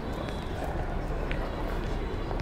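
City street ambience: a steady low rumble of traffic under indistinct voices, with a few scattered light clicks.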